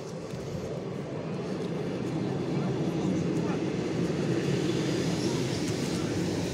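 ER9M electric multiple unit pulling into the platform: a steady rumble of wheels on rails that grows louder as the carriages come alongside.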